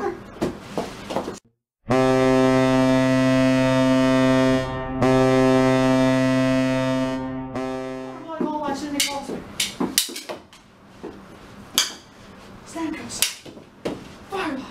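Hockey goal horn sounding a low, steady tone for about six seconds after a brief dropout, signalling a goal, then fading out. Afterwards come a few scattered sharp clicks and knocks.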